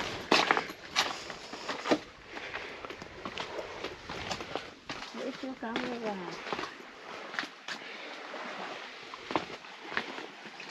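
Footsteps of sandals on stone steps: three sharp slaps in the first two seconds, then lighter irregular steps. About five seconds in, a short pitched sound glides down in pitch.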